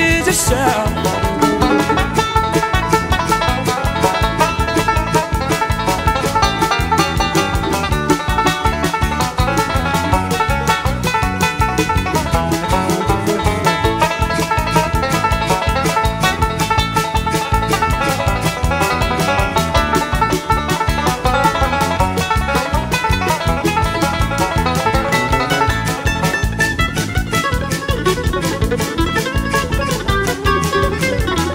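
Bluegrass band playing an instrumental break with no singing: a five-string banjo takes the lead over acoustic guitar, at a steady even beat.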